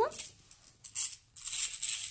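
Small self-propelled toy caterpillar running across a carpet: faint clicks, then a faint high-pitched whir from its mechanism in the second half.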